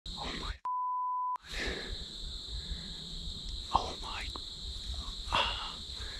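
A censor bleep: one steady, pure high beep lasting under a second, about half a second in, with the rest of the sound muted while it plays. A constant faint high-pitched whine runs underneath.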